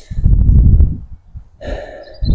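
Wind buffeting the microphone: a loud low rumble through most of the first second, then a short, quieter breathy hiss near the end.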